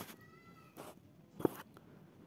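A faint, drawn-out high-pitched call in the background during the first second, then a single short click about a second and a half in.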